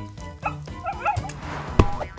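Short yips and whimpers from a cartoon puppy over light background music, with two sharp knocks, the louder one near the end.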